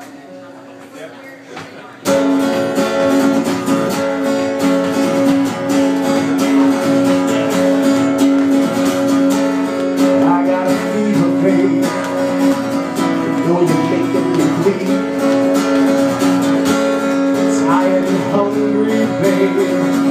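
Acoustic guitar strummed in a steady rhythm as a song's opening. It starts suddenly about two seconds in and keeps going, with one note ringing on under the chords throughout.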